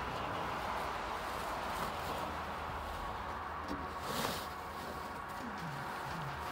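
Fabric car cover rustling and crinkling as it is rolled and twisted up by hand, with a brief louder rustle about four seconds in.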